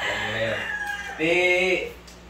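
A gamecock crowing once, a short arched call about a second in, after the tail end of a man's speech.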